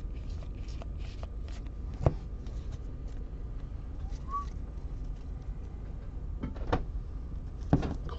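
Trading cards and a foil-wrapped card pack being handled: faint rustling with a few sharp taps, the sharpest about two seconds in and two more near the end, over a steady low hum.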